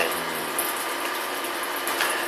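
Steady background noise, an even hiss with a faint low hum and no distinct events: the recording's constant room noise between spoken lines.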